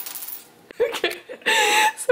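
A small old metal coin dropped onto a stone countertop: a sharp click right at the start with a brief high ringing that dies away within half a second. Laughter and voices follow from about a second in, loudest near the end.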